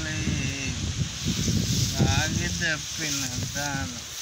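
A man's voice speaking in short, broken phrases.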